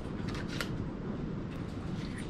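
Small clear plastic packet being handled and opened, with a few light crinkles and ticks.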